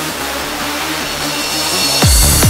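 Psytrance breakdown with the kick drum dropped out: a steady noisy synth wash with short synth notes underneath, building toward the kick's return.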